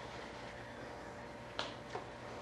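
Quiet room tone with a faint steady hum, and two small sharp clicks close together near the end.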